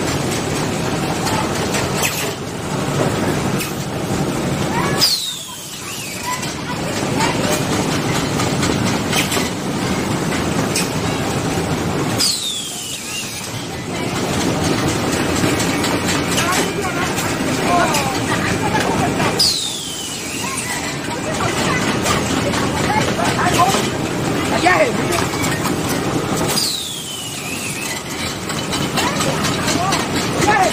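Carton folder-gluer machine running, a steady mechanical clatter of belts and rollers. A short high-pitched squeal that falls in pitch comes about every seven seconds, four times in all.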